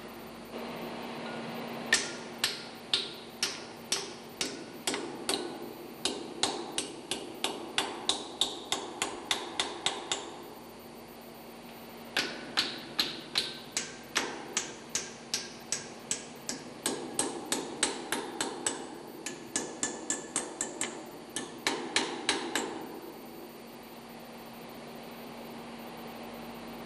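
Hammer tapping the tab of a locking disc, bending it up flat against a large hex lock nut to secure the nut: a run of quick metallic blows, about two or three a second, with a pause of about two seconds midway.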